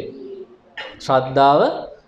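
A man's voice speaking in a sermon, with one syllable held at a steady pitch about a second in.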